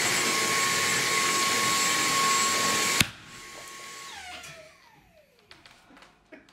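Cordless stick vacuum running with a steady high whine, cut off by a sharp click about three seconds in, after which its motor winds down with a falling whine that fades out.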